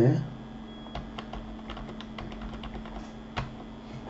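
Computer keyboard and mouse clicks: a scattering of short, sharp taps over a faint steady hum, the loudest about three and a half seconds in.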